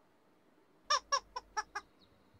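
A quick run of five short, high chirping notes about a second in, the first two the loudest and the rest fainter.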